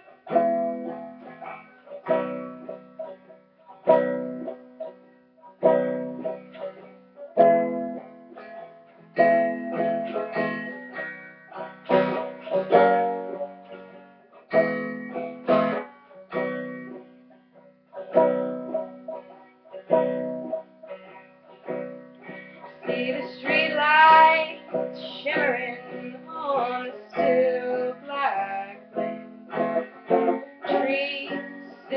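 Solo acoustic plucked-string instrument playing an instrumental introduction, a repeating chord pattern struck about every two seconds. A wavering held melody rises above it for a few seconds near the end.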